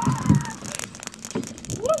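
A load of tennis balls pouring out of a cardboard box onto packed dirt: a dense clatter of soft thuds and bounces right at the start that thins into scattered single bounces. A woman's cheering shout begins just before the end.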